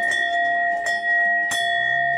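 Hanging metal bell ringing with a long, steady ring, struck again about one and a half seconds in.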